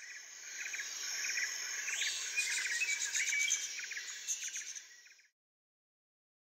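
Nature ambience of birds chirping over a steady high insect drone, fading and cutting off a little after five seconds in.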